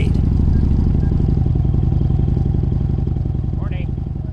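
Harley-Davidson V-twin motorcycle engine running steadily, heard from on the bike, with a fast, even low pulse; it gets a little quieter toward the end.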